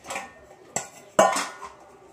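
Metal cookware and utensils clanking as a pot is handled to cook rice: three sharp knocks, the loudest a little over a second in, ringing briefly.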